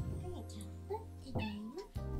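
Domestic cat meowing twice, a short meow about half a second in and a longer one around a second and a half in.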